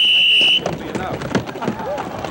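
Referee's whistle: one long steady blast that cuts off about half a second in, signalling the start of a roller-games match race.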